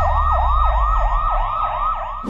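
Siren sound effect in a fast yelp: the pitch falls and snaps back up about three times a second, over a low rumble.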